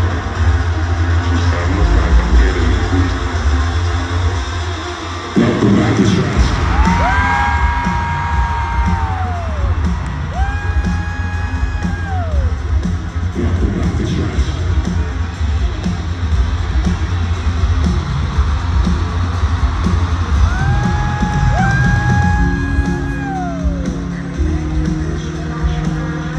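Loud live music in an arena, with a heavy low beat, as a rock show opens. The music comes in harder about five seconds in. Crowd cheering rides on top, with three long held yells that each fall off at the end.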